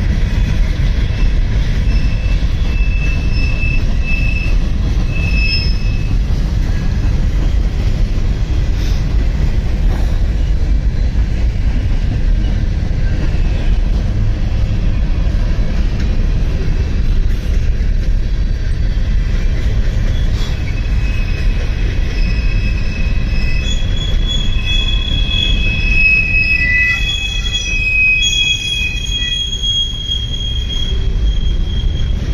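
Freight train cars rolling past, a steady heavy rumble of wheels on rail, with high-pitched wheel squeal a few seconds in and again through the last third.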